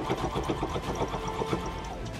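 Brother ST371HD Strong & Tough sewing machine stitching through four layers of leather, its needle running in a fast, even rhythm.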